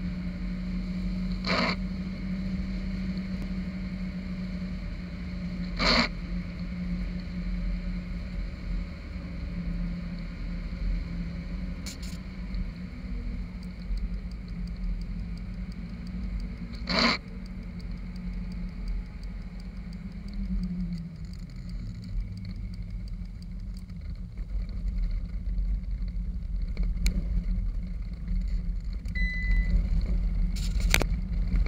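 Jeep engine running steadily with tyre and road noise on a wet road, heard from a hood-mounted camera; the engine note drops in pitch about twenty seconds in as the vehicle slows. A few sharp clicks, several seconds apart.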